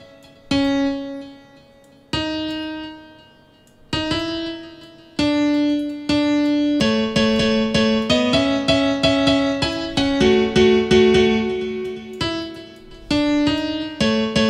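FL Keys virtual piano playing back a two-voice chord melody: a few chords struck and left to ring out and fade over the first few seconds, then a quicker run of repeated chords from about five seconds in.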